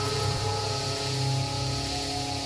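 Background music of long held notes, over a steady hiss.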